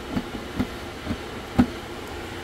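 A few short, dull knocks from the plastic recovery tank of a Kärcher floor scrubber-extractor and its intake pipe as they are handled, with the dirty extraction water inside. The last knock, near the end, is the loudest. A steady background hum runs underneath.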